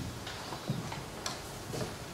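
Quiet room tone with three faint, short ticks.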